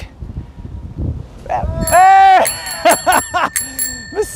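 A bicycle bell rings about two seconds in and keeps ringing, marking the second bike pulled from the canal. It comes in with a loud drawn-out vocal exclamation, after quieter handling noise of the rope and the catch.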